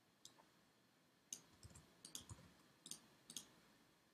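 Faint, scattered clicks, about six, from a computer mouse and keyboard being worked to fill in a web form.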